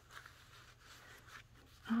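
Faint rustling and soft rubbing of stiff old letter paper and journal pages as it is folded and moved by hand, with a few light ticks. A woman's voice starts right at the end.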